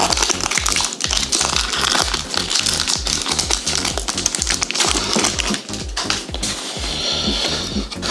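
Background music with a steady beat, over the crinkling and tearing of a foil Pokémon booster pack wrapper as it is ripped open and the cards pulled out.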